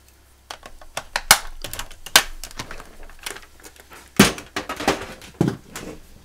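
Handling noise from a plastic paper-scoring board being lifted and set aside on the cutting mat: a run of sharp knocks and clatters, the loudest about one, two and four seconds in.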